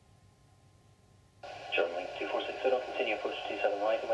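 Air traffic control radio: a faint hiss with a steady hum, then about a second and a half in a transmission cuts in abruptly and a voice talks over the radio, thin and narrow-sounding.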